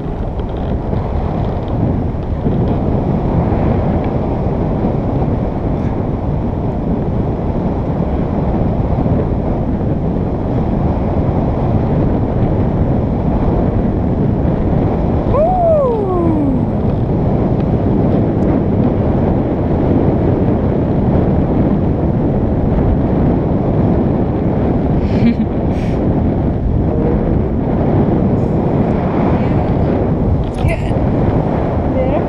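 Airflow from a paraglider in flight buffeting the camera's microphone: a loud, steady wind rush. About halfway through, a single short whistle-like tone slides downward.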